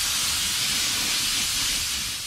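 Compressed-air blow gun on a shop air hose, blowing a steady, continuous hiss of air.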